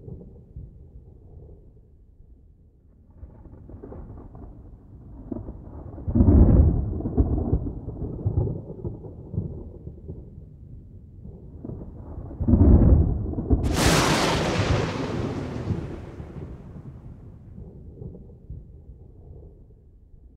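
Rolling thunder: deep rumbles that swell twice, then a sharp thunderclap about 14 seconds in that dies away over several seconds.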